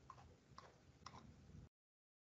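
Near silence with a few faint, irregular ticks from a computer mouse's scroll wheel as a document is scrolled. The sound cuts off to dead silence near the end.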